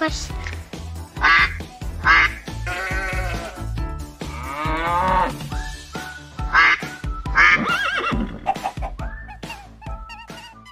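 Recorded farm-animal calls, among them duck quacks and other livestock cries, sounding one after another over children's background music with a steady beat. Most calls are short, and one longer call wavers in pitch.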